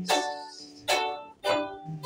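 Red ukulele strummed: three chord strokes, at the start, about a second in and about a second and a half in, each ringing out and fading between sung lines.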